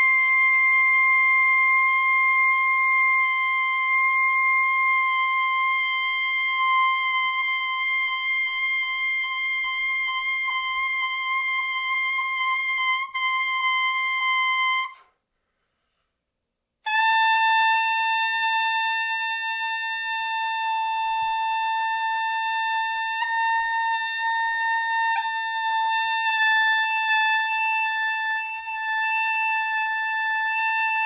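Solo soprano saxophone holding one long high note for about fifteen seconds, stopping for about two seconds, then holding a second long note a little lower, which wavers briefly partway through.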